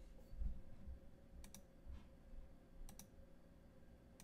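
Faint computer mouse clicks: two quick double-clicks about a second and a half apart, over a faint steady hum.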